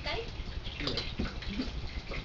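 Quiet, indistinct talk in short fragments over a steady background hiss and low rumble.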